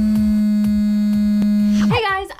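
Synthesized electronic buzz tone accompanying a logo sting. It is held loud and steady for about two seconds, slides up in pitch as it starts and drops away just before the end, over a faint continuing beat.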